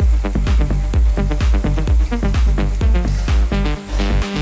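Electronic dance music with a steady beat of about two kicks a second.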